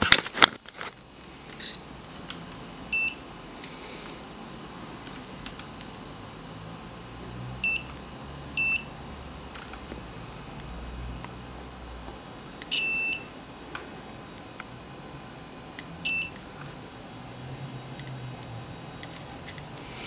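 Digital multimeter continuity beeper sounding in about five short high beeps, one held for about half a second, as the probes touch the silver-sputtered plastic sheet: the beeps signal that the silver coating conducts. A sharp knock at the very start.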